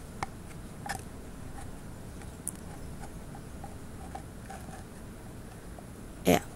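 Silicone menstrual cup (Lumma Unique, large) being pressed into the mouth of a narrow plastic sterilizing cup: faint scattered clicks and rubbing of silicone against plastic, two slightly louder clicks in the first second. The cup is too wide to go in.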